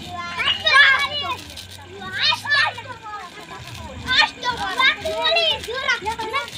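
Young children's voices calling out and chattering while they play, in three clusters of high-pitched calls with short gaps between them.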